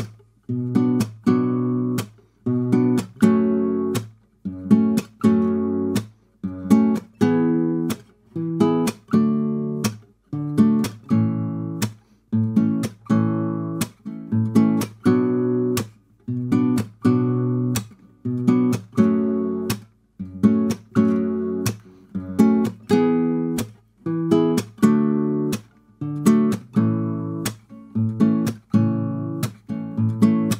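Nylon-string guitar with a capo at the second fret playing a fingerstyle rhythm: thumb on the bass string and fingers plucking the treble strings together, a short wait, then a percussive slap of the hand on the strings. The pattern repeats steadily through the chord changes, about one chord a second, with sharp slap clicks between the chords.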